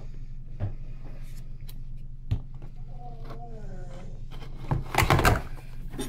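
Clear plastic cup and plastic enclosure being handled: a few light knocks and scrapes, then a louder clatter of plastic about five seconds in as the cup is set down over the substrate.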